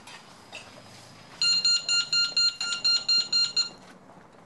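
Shop anti-theft security gate alarm beeping rapidly, about five beeps a second for some two seconds, starting about one and a half seconds in: tagged, unpaid goods are being carried out through the exit gates.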